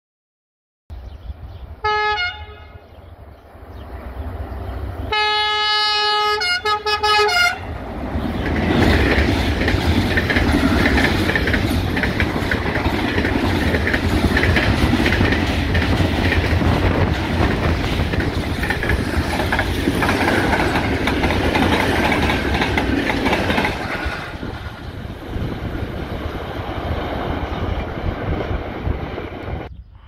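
A Class 5600 electric locomotive sounds its horn, a short toot and then a longer blast a few seconds later. It then passes close by hauling container wagons, their wheels rumbling and clattering loudly for about sixteen seconds before fading.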